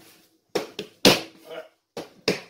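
Yeast bread dough being kneaded by hand on a countertop: a quick series of sharp smacks, about four, the loudest a little after a second in.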